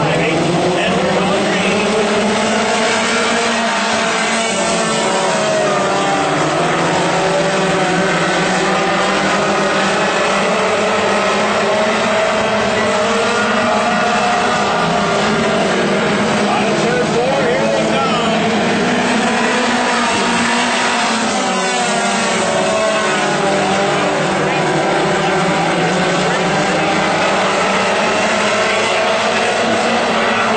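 A pack of WISSOTA Mod Four race cars' four-cylinder engines running hard together, a steady loud drone of several engines whose pitches rise and fall as the cars accelerate and lift.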